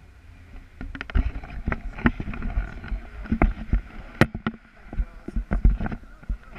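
Wind rushing over an action camera's microphone during a tandem paraglider flight. From about a second in, irregular thumps and sharp knocks come from the camera and its pole mount being moved and turned.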